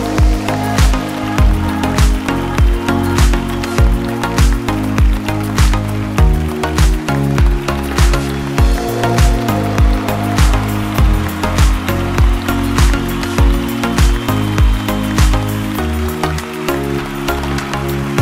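Upbeat background music with a steady beat of about two strokes a second over a deep bass line and held chords.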